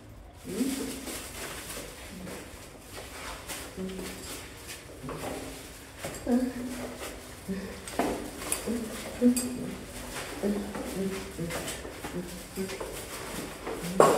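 Indistinct voice fragments, fainter than close speech, with no clear words. A few light clicks sound in the middle.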